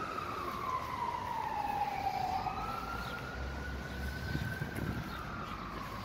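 A siren wailing, its pitch sliding slowly down and back up about once every five seconds.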